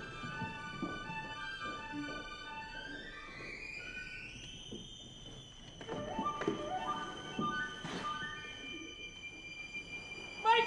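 An opera orchestra playing quietly: sustained string chords, with a line rising in the high violins near the middle. A few short soft knocks or plucked notes come in the second half.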